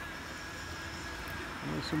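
Steady low outdoor background rumble with a faint, thin, steady whine above it; a man starts talking near the end.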